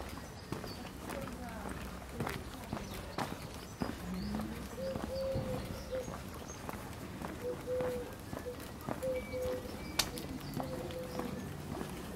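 Footsteps on brick and cobblestone paving, a string of irregular sharp clicks, with voices in the background.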